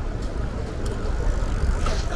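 City street ambience: a steady low rumble of distant traffic, with a few faint light ticks.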